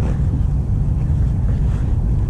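Steady low rumble of wind buffeting the camera microphone, with no distinct events.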